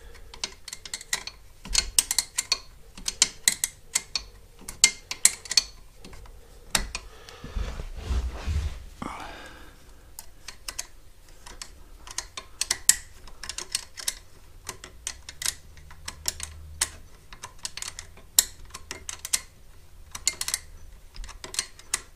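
Irregular light clicks and taps of small plastic and metal parts being handled as a mobility scooter's wiring and frame fittings are worked on by hand. A low knock and a short rubbing sound come about eight seconds in.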